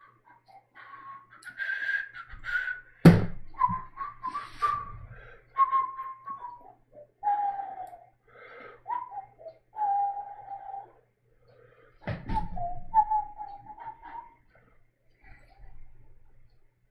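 A man whistling a slow tune, one held note after another. A sharp knock sounds about three seconds in, and another about twelve seconds in.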